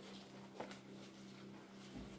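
Near silence: room tone with a faint steady hum and one soft click a little past halfway through.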